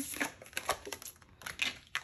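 Tarot cards handled on a wooden tabletop: several light taps and slides as cards are picked up and set down.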